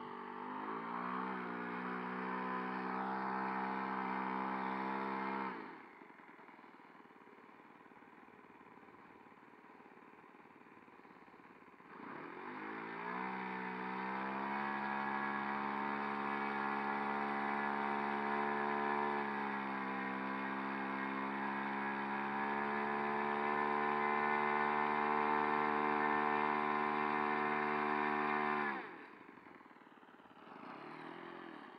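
A four-stroke model airplane engine running on the ground. It runs up in pitch and cuts out about six seconds in, starts again about twelve seconds in, runs with its pitch shifting up and down, and stops suddenly near the end.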